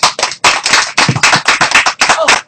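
A small group of people applauding by hand, with quick, dense, overlapping claps.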